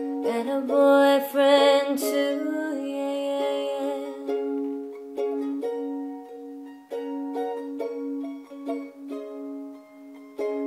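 Acoustic instrumental passage between sung lines of a song: a plucked string instrument plays a repeating figure over a held low note, with new notes struck about once a second.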